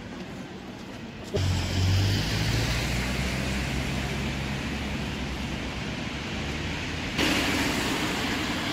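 Street traffic on a wet road: a steady hiss of tyres with low engine rumble from passing cars. The level jumps up suddenly twice, about a second in and near the end.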